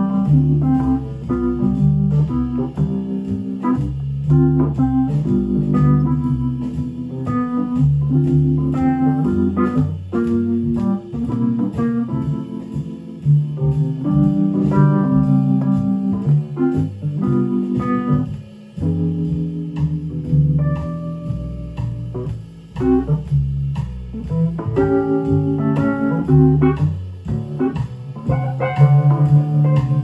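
Wurlitzer electronic piano playing jazz chords through a "Rhythm Changes" progression at 120 beats per minute, both hands comping in an even rhythm.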